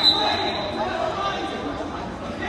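A referee's whistle blast, one steady high tone, cuts off about half a second in. After it come voices and chatter echoing in a large gym.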